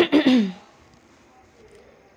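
A woman clearing her throat once: a short, loud rasp of about half a second right at the start.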